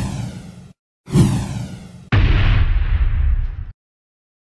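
Loud video-editing sound effects for an outro graphic: two swooshes that sweep down in pitch, each about a second long, then a sudden heavy rumbling hit that lasts about a second and a half and cuts off abruptly.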